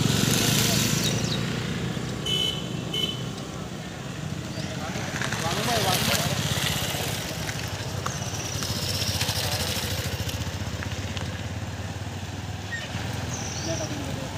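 Motorcycle engine running steadily, with people talking in the background. Two short high beeps sound about two and a half seconds in.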